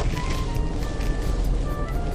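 Background music: a slow melody of short held notes, over the low rumble of the car on the road.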